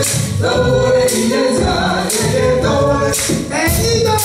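Live Afro-Cuban folkloric music: a chant to Oshun sung by several voices over the band and percussion, with sharp percussive accents about once a second.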